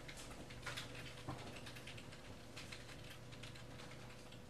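Faint, irregular light clicks of typing on a laptop keyboard, over a thin steady hum.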